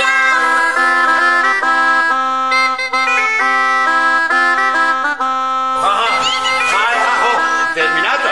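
Bagpipe playing a lively stepping melody over a steady drone. About six seconds in the lowest drone drops out and sliding, voice-like sounds join the piping.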